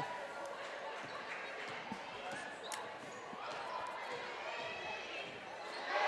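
Gym sounds of a basketball game in progress: a basketball dribbled on the hardwood court, giving a few faint knocks over a low background of crowd chatter in the large hall.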